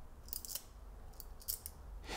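Segments of a flip-dot seven-segment display snapping over with faint, sharp clicks as it is slid across small magnets set in a board. There is a cluster of clicks about a third of a second in and another between about one and one and a half seconds.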